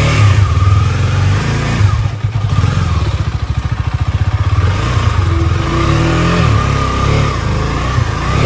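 KTM Duke 250 single-cylinder engine running as the motorcycle is ridden slowly, with a pulsing low exhaust note and a brief dip about two seconds in. The owner says this bike runs only intermittently and not properly.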